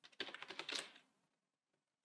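A quick, faint run of computer keyboard keystrokes, about half a dozen, typing a short word in under a second, then stopping.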